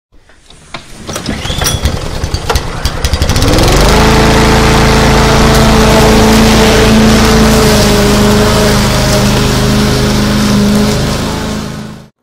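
An engine being started: about three seconds of irregular sputtering clicks, then it catches, rises in pitch and runs at a steady speed, fading out at the very end.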